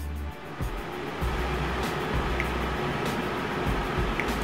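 An electric tower fan, switched on through a smart plug, comes on and runs with a steady rush of air.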